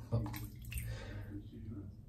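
A short splash of water in a basin, beginning with a sharp knock and dying away after about a second.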